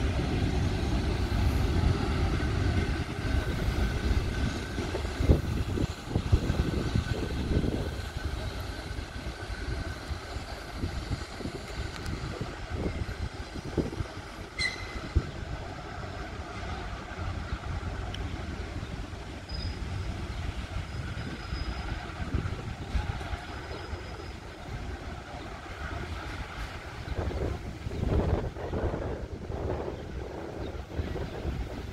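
Electric commuter trains moving slowly through a station: a low rumble of wheels on rails and running gear, loudest in the first few seconds and fading after. A single sharp click sounds about halfway through.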